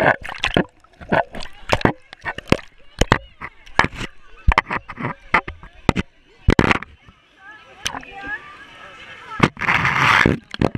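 Shallow pool water splashing and sloshing right at the microphone, in many irregular sharp splashes, with a louder rush of splashing near the end. Children's voices in the background.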